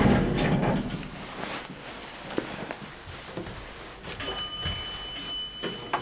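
Elevator arrival chime ringing twice, two sustained bell-like tones about a second apart near the end, described as a very nice chime. Before it, a low steady hum in the cab fades out about a second in.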